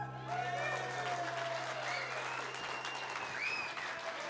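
Audience applauding and cheering at the end of a song, with voices whooping over the clapping. The final piano chord rings under it and dies away about two and a half seconds in.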